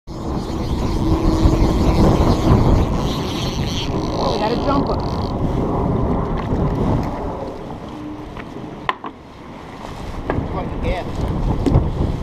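Wind buffeting a body-worn camera's microphone: a heavy low rumble that eases after about seven seconds, with one sharp knock about nine seconds in.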